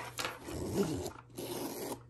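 Metal zipper on a pebbled-leather crossbody bag being slid open, a soft rasp mixed with the rub and scrape of hands handling the leather. The zipper runs easily.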